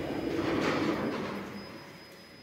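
OTIS elevator machinery running at the landing: a rolling, rattling mechanical noise that dies away about a second and a half in.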